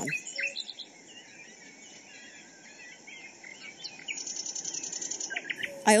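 Forest ambience with several birds chirping. About four seconds in, a fast, high-pitched trill runs for over a second.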